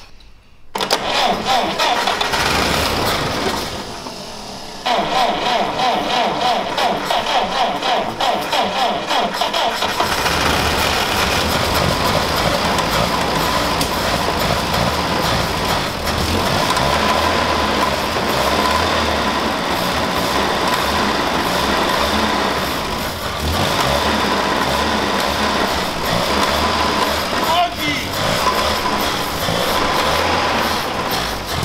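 A 1940 GAZ-M1's four-cylinder side-valve engine is cranked on the starter in pulsing bursts. About ten seconds in it catches and keeps running on fuel poured by hand into the carburettor, after standing unused for decades.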